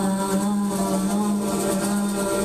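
Live band holding one long, steady final chord at the close of the song.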